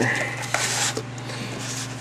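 A cardboard collector's box is being slid and handled, making a soft scuffing rustle that fades about halfway through. A steady low hum runs under it.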